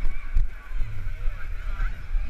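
Irregular thuds of footsteps jogging down concrete arena steps, with distant voices echoing through the arena.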